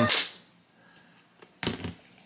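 A brief swish as the plush toy is handled inside its hard plastic shell, then near silence.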